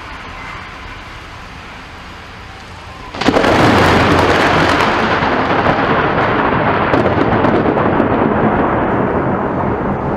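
Steady rain hiss, then about three seconds in a sudden loud thunderclap that keeps rumbling on.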